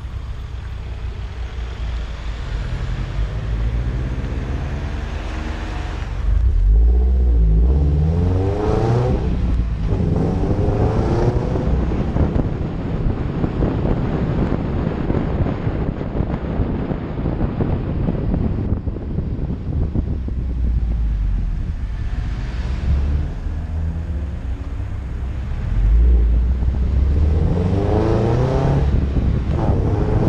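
Subaru WRX STI's turbocharged flat-four engine pulling hard, its pitch rising through several accelerations that start about six seconds in and again near the end, with a steady rumble of engine and road noise in between.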